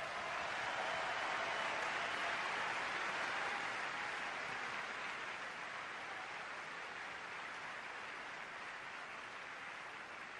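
Audience applauding: a steady wash of clapping that swells in at the start and slowly tapers off.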